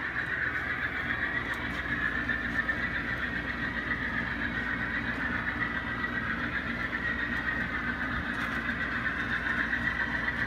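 HO-scale Bowser Alco C630 model locomotive running with its hopper train on layout track: a steady high whine over a low rolling rumble.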